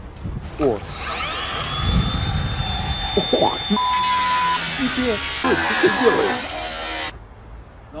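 A motor spins up to a high, steady whine about a second in and runs until it cuts off abruptly near the end, over voices and a short bleep.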